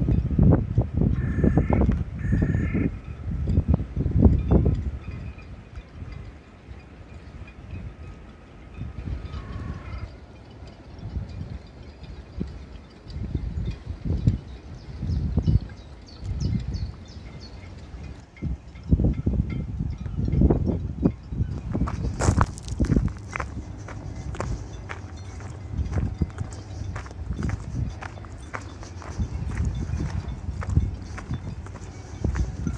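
Wind buffeting the phone's microphone in gusts, with a few short bird calls early on and around ten seconds in. From about two-thirds of the way through, footsteps come in as a run of regular sharp steps.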